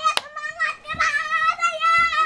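A high-pitched human voice holding one long, wavering call, without words, after a couple of sharp clicks at the start.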